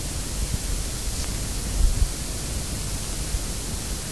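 Steady hiss from a cassette tape recording, with a low rumble underneath.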